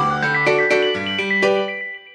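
Background music: a run of plucked melody notes over a bass line, dropping away near the end as the piece reaches its last notes.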